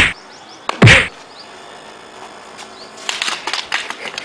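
Two short, loud swish-and-hit strikes, as of a wooden stick swung in a fight: one right at the start and one about a second in. About three seconds in comes a brief run of light scuffs and taps.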